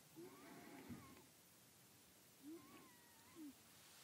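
Near silence, with about three faint, short animal calls that rise and fall in pitch, and a soft low thump about a second in.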